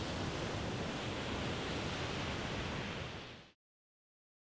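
Ocean surf washing on a beach, a steady rushing that fades out about three and a half seconds in.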